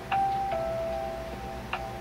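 Background music of slow bell-like notes, a few struck tones that each ring on.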